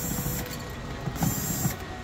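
Cordless drill-driver whirring in two short bursts, one right at the start and one just past a second in, backing screws out of a Bitcoin miner's hashboard assembly.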